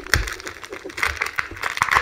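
Trading cards being handled and set down close to the microphone: a quick run of rustles and sharp little clicks.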